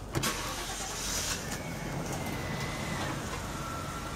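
Chevy high-top conversion van's engine starting just after the start, then running steadily at idle.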